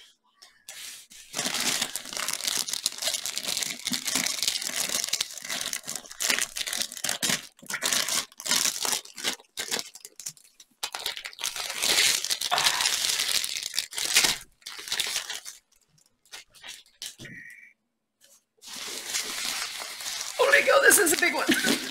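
Clear plastic wrapping crinkling and tearing as it is pulled off a large rolled diamond-painting canvas, in a run of rustling bursts. It goes quiet for a couple of seconds near the end, then starts again.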